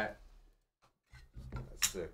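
The end of a man's speech, then a short gap of near silence and faint low voices, with one sharp click near the end.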